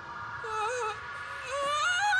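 An anime character's high, wavering, whimpering voice from the episode's audio, rising in pitch near the end, over a faint steady tone.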